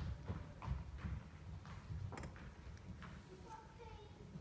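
A run of irregular knocks and thuds, about two or three a second, the sharpest right at the start and about two seconds in, with faint voices underneath.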